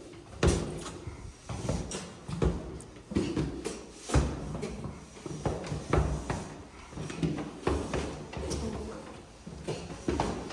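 Footsteps of several people walking down a staircase: a run of uneven thuds, about two a second, as feet land on the treads.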